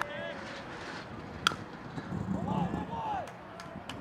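A single sharp crack of a baseball bat meeting the pitch, about a second and a half in, with a brief ringing ping, followed by voices shouting from the crowd and dugout.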